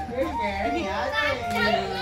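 Children's voices talking and calling out as they play, over background music with a held steady note.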